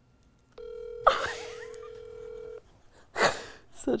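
Phone ringback tone over a phone's speakerphone: one steady ring about two seconds long, starting about half a second in, while the call waits to be answered. A loud, sudden gasp cuts across it about a second in, and another sharp burst of breath comes near the end.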